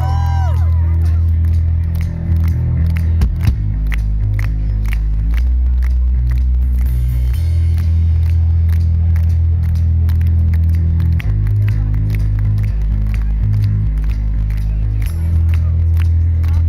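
Live rock band playing loud and steady: electric guitar, bass guitar and drum kit with a heavy low end and a regular drum beat.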